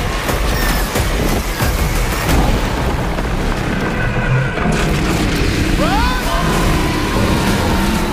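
Trailer soundtrack: music under a dense run of deep booming hits and action sound effects, with a brief rising and falling pitched cry about six seconds in.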